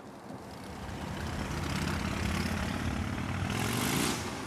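Harley-Davidson Sportster XL 1200 Forty-Eight V-twin running through a loud exhaust, growing steadily louder as it revs. Police stop the bike moments later for being much too loud, which they put down to the exhaust.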